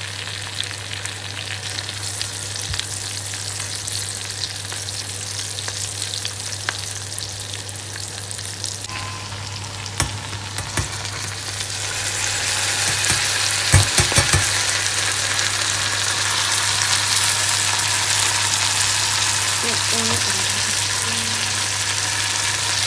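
Chopped onions sizzling in oil in a steel saucepan as they are stirred with a silicone spatula. About halfway through, a sieve of soaked omena (small dried fish) is tipped in and the frying grows louder, with a few knocks against the pan.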